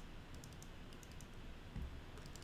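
Faint, irregular clicks of a computer keyboard in use.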